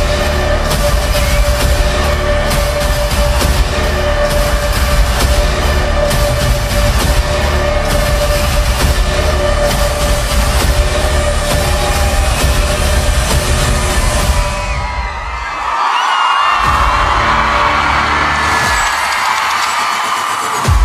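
Loud concert music with a heavy beat and deep bass. About three-quarters through, the bass cuts out briefly while a crowd cheers and screams over the music.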